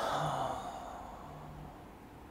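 A person's long breathy sigh, starting suddenly and fading over about a second: breath let out in relief on releasing a held abdominal hold.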